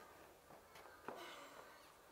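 Near silence: classroom room tone with a couple of faint, soft clicks.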